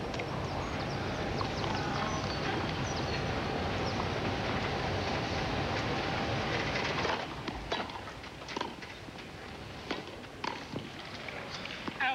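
Crowd noise that falls away suddenly about seven seconds in. Then comes the hush of a grass-court tennis point, with the sharp pops of the ball struck by racquets, roughly one a second.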